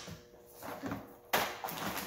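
A sharp hard-plastic clack about a second and a half in, as a plastic parts organizer is handled, followed by a smaller click.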